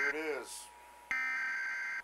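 Emergency Alert System header data bursts on a TV broadcast: steady, buzzy electronic tones. One burst ends right at the start, a voice says "here it is", and after a short quiet gap another burst starts about a second in and runs on.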